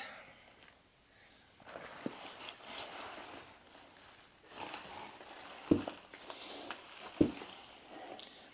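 Rustling handling noise around a guitar lying in its cardboard box with plastic packing, with two sharp knocks in the second half.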